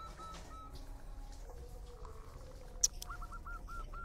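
A quiet pause with a bird chirping faintly in the background, a quick run of short repeated notes at the start and again near the end, and a single sharp click about three quarters of the way through.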